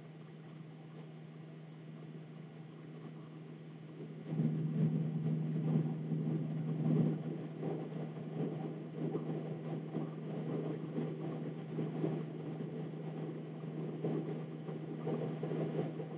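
Pen writing on a paper worksheet: soft, irregular scratching strokes that start about four seconds in, over a steady low hum.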